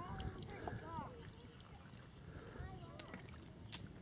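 Faint distant voices over a quiet, steady outdoor background, with one sharp click near the end.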